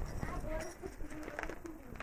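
A bird cooing in short low notes, like a pigeon or dove.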